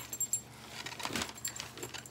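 Light metallic jingling clinks and handling rustle as a doll is worked free of its packaging: a cluster of small high clinks near the start and a few more toward the end, with a soft knock in between.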